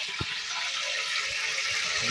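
Steady rushing hiss from a large cooking pot heating over an open wood fire, with a single click near the start.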